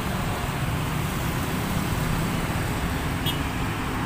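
Road traffic at a busy junction: cars and a small pickup truck passing, a steady low rumble of engines and tyres. A brief faint high chirp comes a little after three seconds in.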